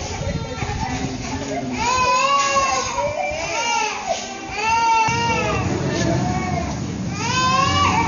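Loud, high-pitched crying: about four wailing cries, each rising and falling in pitch, with short breaks between them.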